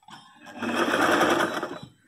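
Electric sewing machine stitching in one short run: it builds up in the first half second, runs at full speed, then slows and stops near the end. It is sewing pleats into fabric.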